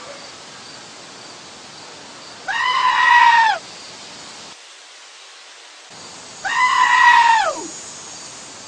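A black-faced sheep screaming twice, each call a loud, pitched cry of about a second that holds steady and then drops in pitch at its end; the second call falls further.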